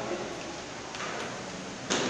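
Table tennis ball clicking off the paddles and table in a rally: a few short, sharp clicks about a second apart, the loudest near the end.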